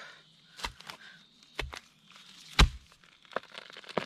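Long-handled hoe chopping into the soil and base of a large spring bamboo shoot to dig it out: three main blows about a second apart, the third the loudest, with a few lighter knocks after.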